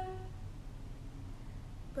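A short pause in a sung song: a held female vocal note fades out in the first moments, leaving only a quiet low hum and faint backing until the next line starts right at the end.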